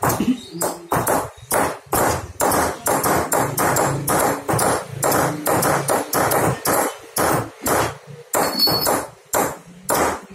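Small hammers tapping steel chisels into a brass sheet being hand-engraved: a quick, irregular run of sharp metallic taps, about three a second, each with a short ring, from more than one worker.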